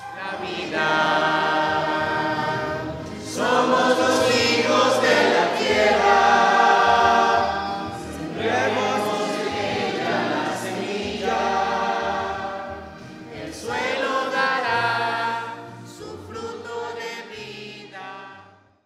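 Choir singing in long held phrases over a low bass line, as a music soundtrack.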